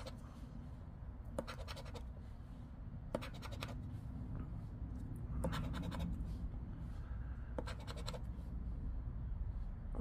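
A poker chip scratching the coating off a paper scratch-off lottery ticket, in about four short bursts of quick strokes with pauses between them.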